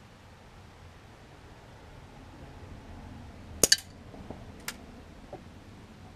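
A Daisy PowerLine 901 multi-pump pneumatic air rifle fires once, a sharp crack a little past halfway through with a second snap right after it. A lighter metallic click comes about a second later, then a couple of faint ticks.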